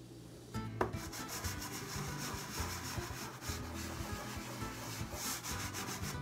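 Soft pastel stick rubbing and scratching across a drawing surface in quick back-and-forth strokes, laying down colour; it starts about half a second in.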